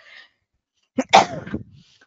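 A woman sneezes once, a single short sharp burst about a second in.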